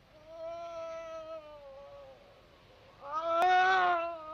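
A man's drawn-out wailing cries of pain, two long held moans, the second louder and starting about three seconds in, with a sharp click during it.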